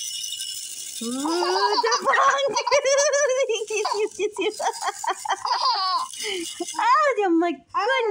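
A plastic caterpillar baby rattle is shaken, giving a high, hissing rattle through the first couple of seconds and briefly again in the middle. From about a second in, a high-pitched voice squeals and laughs over it without words.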